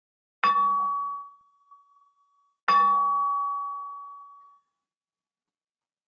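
Modal impact hammer with a nylon tip striking a pry bar twice, about two seconds apart. Each tap sets the bar ringing with several clear bell-like tones as it excites the bar's resonant modes. The second hit is harder and rings out longer, fading over about two seconds.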